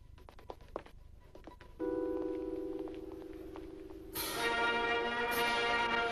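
Faint scattered footsteps on a hard floor, then about two seconds in a single held note sounds, and about four seconds in a brass band comes in loudly with a sustained chord.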